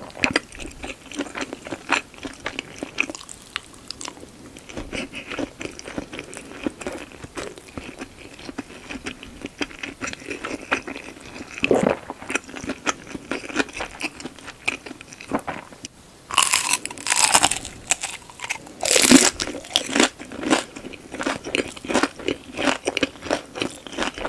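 Close-miked chewing with many small wet mouth clicks as rice and shumai are eaten. About two-thirds through come two groups of loud, crisp crunches: bites into a deep-fried shumai.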